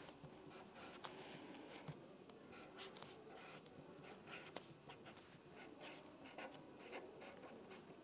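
Faint scratching of a pen writing on paper, in short strokes with small ticks scattered throughout.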